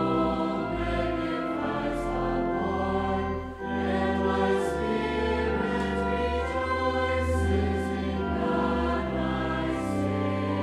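A group of voices singing a sacred hymn with organ accompaniment, long held chords over deep sustained bass notes, with a brief dip between phrases about three and a half seconds in.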